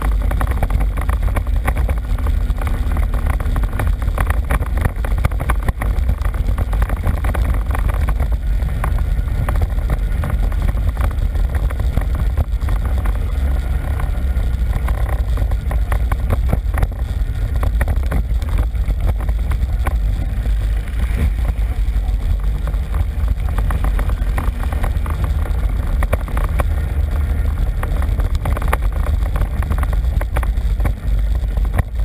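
ATV engine running steadily while riding a rough dirt trail: a heavy low rumble with frequent small knocks and rattles from the bumps.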